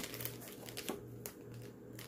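Faint crinkling and a few soft clicks of a thin black plastic bag, wrapped around a collectible figure, being squeezed and handled in the hands.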